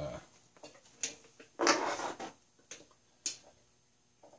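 Small brass fittings being handled and fitted onto a model steam engine: a few light, sharp clicks of metal parts, with a short louder scratchy noise about halfway through.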